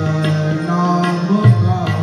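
Tabla played as accompaniment to a devotional song, over a sustained melodic line. A deep bayan stroke about one and a half seconds in is the loudest moment.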